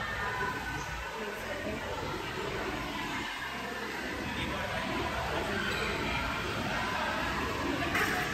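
Steady background noise of a crowded indoor hall, with faint distant chatter of other visitors.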